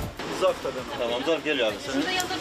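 Speech: a woman's voice talking.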